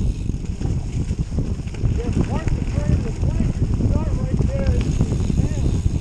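Wind noise on the microphone and the tyres of a Canyon Grail gravel bike rumbling over a leaf-covered dirt trail while riding, a steady low rushing.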